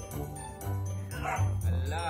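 A husky vocalizing a few short, pitch-bending calls from about a second in, over background music.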